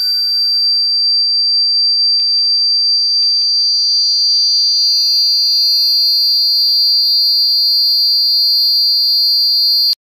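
Drone/harsh noise music: a steady, piercing high electronic tone over a low hum, with a few faint crackles, cutting off suddenly at the very end.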